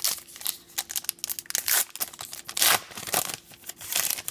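A 2016 Topps Gypsy Queen baseball card pack's plastic wrapper being torn open and crinkled by hand, in a run of irregular crackles. The loudest rips come a little under two seconds in and again near three seconds in.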